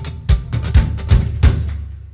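Live rock drum kit: a run of about five heavy bass-drum and snare strikes with cymbals, the last about a second and a half in, then ringing out as the tune ends.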